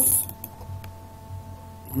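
Two faint computer mouse clicks, as the chart's zoom button is pressed, over a steady electrical hum.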